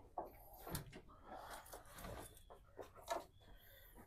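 Faint rustling with a few light knocks scattered through it.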